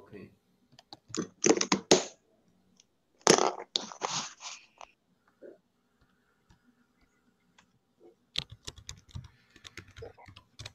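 Computer keyboard typing heard over a video call: a quick run of clicks near the end. Earlier there are two short rushes of rough noise.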